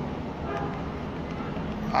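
Open phone line carrying steady background noise, with the caller's voice coming through only faintly: very low on the line.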